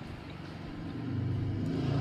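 Low humming rumble, like an engine running, growing gradually louder.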